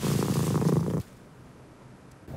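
A cat purring, low and steady, cut off suddenly about a second in.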